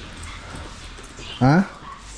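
A single short vocal sound about one and a half seconds in, its pitch rising sharply, over a low steady background hum.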